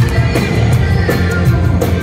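Live new wave band playing: drums keep a steady quick beat over a heavy bass and keyboards, with short falling slides in pitch in the middle.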